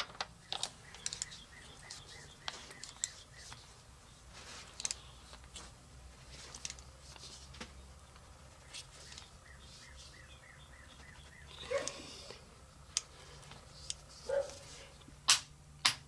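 Torque wrench tightening a diesel injector's nozzle nut: faint scattered clicks and small ticks of the wrench working, with a few sharper clicks near the end as it comes up to 45 ft-lb.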